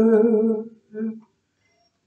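A man's voice holding a wordless sung note, steady in pitch, then a shorter second note about a second in.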